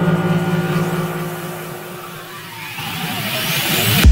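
Techno breakdown with no beat: a sustained low synth drone fades out over the first two seconds while a noise riser sweeps upward, growing louder and higher toward the drop.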